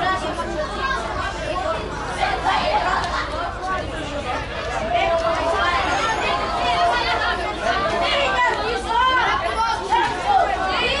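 Several voices of young footballers and onlookers shouting and calling over one another across the pitch.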